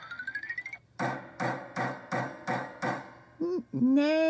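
A quick rising run of notes, then a hammer sound effect striking a nail six times at an even pace. A voice starts near the end.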